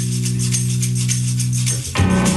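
Music: a held low chord under a fast, even rattle of shaken percussion. Near the end the chord breaks off and a new, busier section begins.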